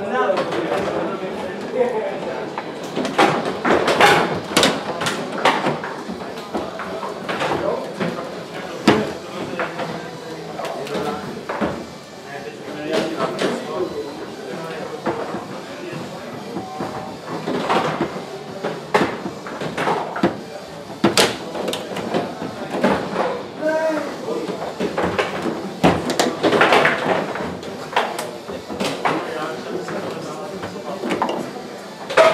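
Foosball play on a Rosengart table: repeated sharp clacks of the ball being struck by the plastic men and hitting the table walls, with the rods knocking as they are slammed and spun, over background voices.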